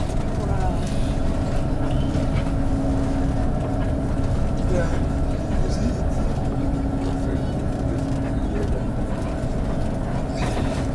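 Steady rumble and hum of a coach's engine and road noise heard from inside the passenger cabin, with faint voices in the background.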